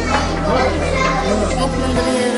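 Many children's voices chattering and calling out at once: a crowded classroom babble.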